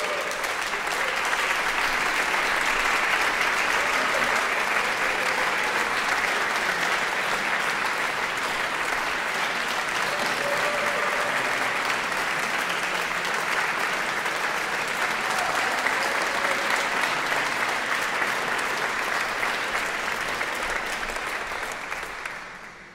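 Audience applauding steadily. It swells within the first second and tapers off slightly near the end.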